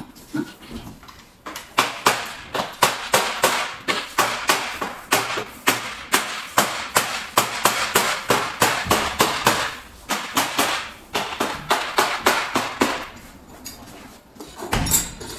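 Rapid hammering at a stainless steel door frame being fitted: sharp blows, about three a second, each with a short ring. They start about a second and a half in, with a few brief pauses.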